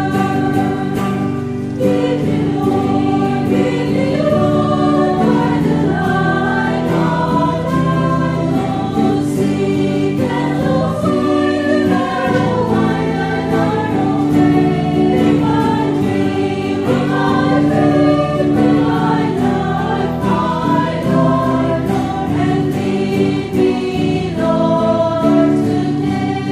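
Church choir singing a hymn, continuous throughout.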